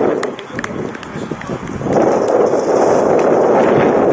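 Outdoor noise on the camera microphone at a grass football pitch, a steady rushing that is weaker at first and louder from about halfway in, with a few light knocks and faint voices.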